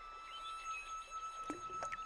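Soft background music: a flute holding one long steady note, with two short sharp sounds about a second and a half in.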